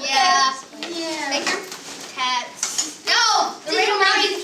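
Children's voices talking and calling out in a classroom, indistinct and overlapping.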